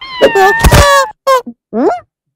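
A cartoon character's wordless vocal sound: a wavering, pitched cry lasting about a second, then two short yelps and a rising call near the end.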